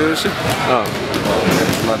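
A man speaking Icelandic in an interview, with a basketball being bounced on the hall floor in the background.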